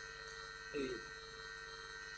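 Steady electrical hum with a man saying one short word about three-quarters of a second in.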